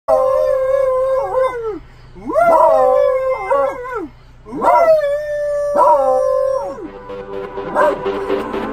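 A beagle howling: three long howls, each held and then sliding down in pitch at the end, with a man howling along beside it.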